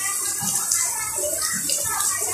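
Indistinct talking over a steady hiss.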